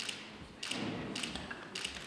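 About half a dozen sharp clicks of DSLR camera shutters firing, some in quick pairs, over a faint murmur of room noise.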